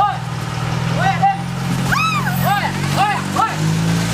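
An SUV's engine running steadily as the vehicle pulls away. Over it come short, high-pitched calls that rise and fall, repeated several times.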